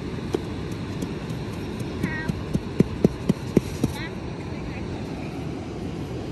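A hand tapping on a plastic sand mold to release the sand, about half a dozen quick knocks a few seconds in, over a steady rush of beach wind and surf.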